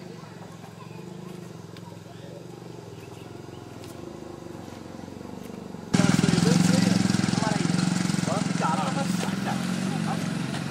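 Indistinct voices of several people talking outdoors over a steady low hum. About six seconds in the sound jumps abruptly louder and closer, with the talking and the low hum both much stronger.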